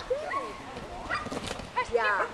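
A dog barking and yipping in short calls, over indistinct people's voices.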